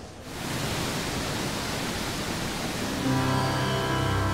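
Rushing water of a large waterfall, a dense, even noise that fades in just after the start and holds steady. Music with sustained low notes comes in under it about three seconds in.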